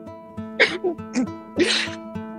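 Acoustic guitar played in an even picked pattern, about three notes a second. Over it come three short, loud breathy bursts from a person's voice.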